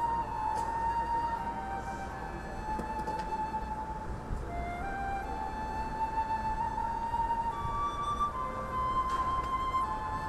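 High school marching band playing a slow passage: a single high melody of long held notes that change pitch every second or so.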